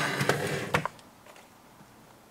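Brief rustling with two light clicks in the first second as the plastic chassis and the paper instruction manual are handled, then only faint room tone.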